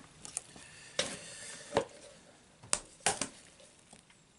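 A spatula spreading whipped cream over a cake layer in a springform tin: soft smearing with a few short knocks and clicks about a second apart, the spatula touching the tin.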